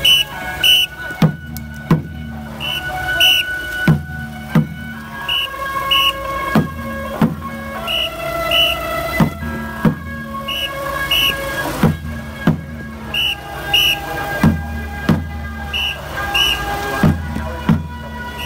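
Procession music: a repeating percussion pattern of low drum beats and paired high metallic strikes, roughly one cycle every second and a bit, with a stepwise melody line over it.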